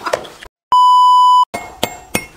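A steady electronic beep at about 1 kHz, a censor-style bleep tone just under a second long, starting abruptly out of dead silence in the middle and stopping just as suddenly. Near the end come a few sharp clicks.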